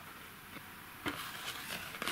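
Faint handling of a small card holding a metal lapel pin: soft rustle of fingers on card with a couple of light clicks, about half a second and a second in.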